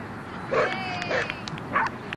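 A dog barking three times, about half a second apart, with a thin high whine between the first two barks.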